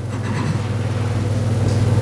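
A steady low hum over a faint even hiss, growing slightly louder.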